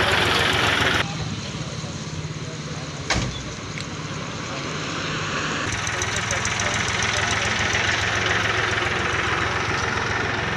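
Car engine idling steadily with a low hum, and a single sharp knock about three seconds in.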